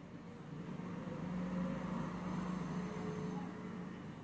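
A low, steady engine-like hum, growing louder from about a second in and easing near the end.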